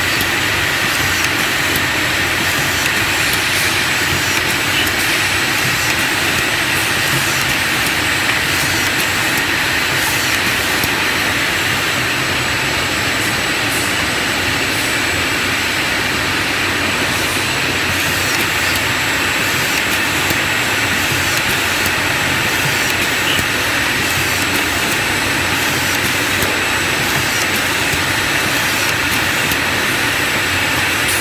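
Steady factory-floor machinery noise: an even, unchanging roar with a faint high whine running through it and a few faint clicks.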